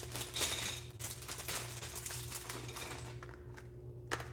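Faint rustling and light clicks of LEGO packaging being handled on a tabletop: plastic parts bags and a small cardboard box. The sounds are busiest in the first second and thin out toward the end, over a low steady hum.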